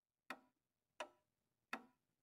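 Slow, even ticking like a clock's: three short, sharp ticks about two-thirds of a second apart.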